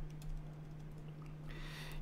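Light keystrokes on a computer keyboard, a few scattered clicks, as a word is typed, over a steady low hum, with a soft hiss near the end.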